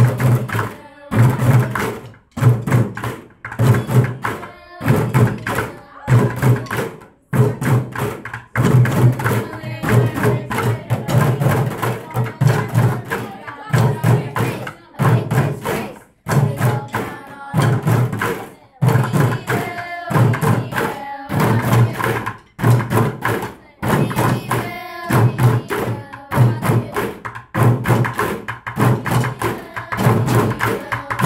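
A large group of beginner children drumming together with sticks on plastic buckets, playing a repeating beat of loud strikes in short phrases separated by brief pauses.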